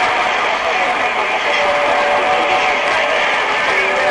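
CB radio receiver hissing with steady band static while a weak signal comes in, faint garbled voices buried in the noise, and a thin steady whistle about a second and a half in.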